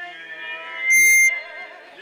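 Voices singing, cut into about a second in by a brief, very loud, high-pitched steady tone that lasts under half a second.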